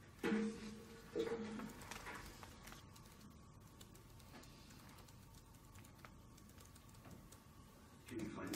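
Faint scattered taps and clicks in a quiet room. Two short, steady low hums come about a quarter second and a second in.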